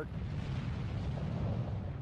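Explosion sound effect for an air blast: a steady low rumble with a hiss over it, with no single sharp bang.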